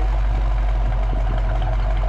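A 1965 Ford Mustang's 289 four-barrel V8 idling steadily through a Magnaflow dual exhaust, heard close to the tailpipes, with a deep, even rumble.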